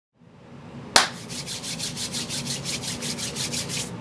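Fades in, then a sharp hit about a second in, followed by fast, even ticking, about seven ticks a second, over a low wavering tone.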